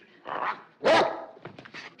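Cats yowling from inside a carried sack: two short cries, the second much louder, about a second in.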